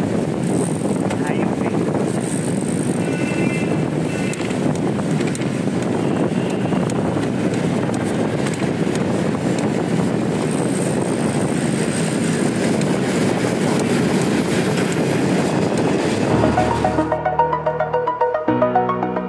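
Wind rushing over the camera microphone on a road bike moving at speed, with tyre and road noise underneath. About a second and a half before the end, it cuts abruptly to electronic music with a beat.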